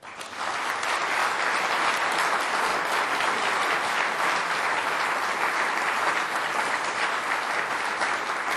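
Audience applause: many people clapping. It starts suddenly, builds within about half a second and then holds steady.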